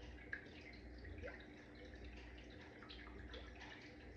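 Near silence: faint room tone with a steady low hum and a few soft, small ticks.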